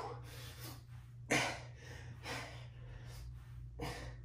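A man breathing hard from the effort of toe-touch crunches, with three sharp, noisy breaths spread through the few seconds, the first the loudest.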